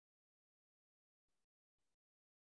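Near silence: the sound track is all but empty, with no speech or other sound.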